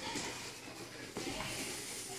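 Faint rustling and shuffling of two grapplers moving across a foam mat, with a soft knock about a second in.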